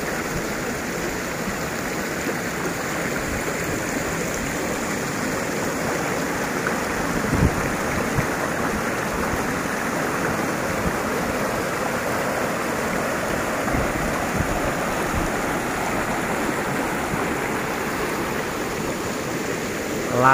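Shallow, rocky river water rushing steadily over and around stones in small rapids, with a single brief thump about a third of the way in.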